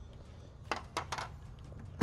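A few light clicks as the headlight assembly's retaining clips are pulled off a GMC Jimmy, over a low steady hum.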